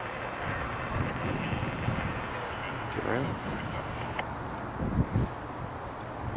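A distant CSX SD40 diesel locomotive runs as it approaches, making a steady low drone under wind noise on the microphone. Brief faint voices come about three and five seconds in.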